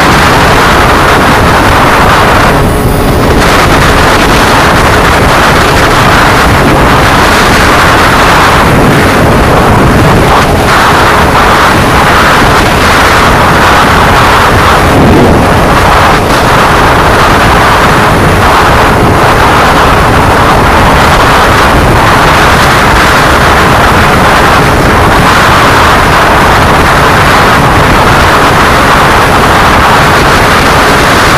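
Yamaha underbone motorcycle at high speed, its engine buried under heavy wind buffeting on a handlebar-mounted camera microphone. Loud, steady and distorted, with no clear engine note.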